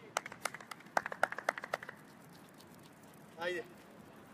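A few people clapping briefly, a quick irregular run of sharp claps lasting under two seconds, followed by a short shouted call.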